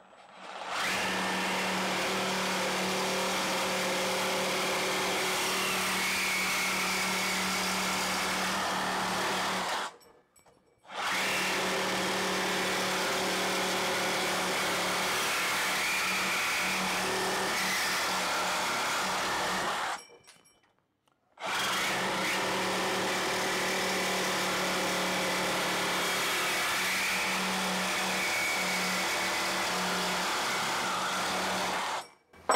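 Makita DJR187 18 V brushless cordless reciprocating saw cutting through a 2 mm-wall steel rectangular tube with a metal-cutting blade: a steady motor hum with a rasping grind of blade on steel. It cuts off abruptly twice, for about a second each time.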